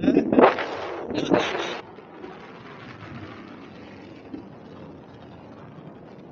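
Wind rushing over the camera microphone on a tandem paraglider in flight: two louder gusts in the first two seconds, then a steady, quieter rush.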